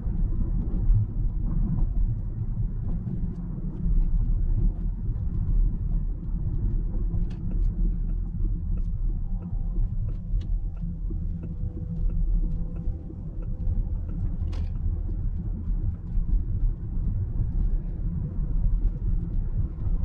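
Road and tyre noise inside the cabin of a moving Fisker Ocean electric SUV: a steady low rumble with no engine note, and a few faint ticks.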